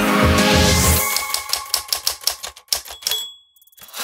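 Closing theme music that stops about a second in. A quick run of sharp clacks follows, about five a second, with a short high ding near the end.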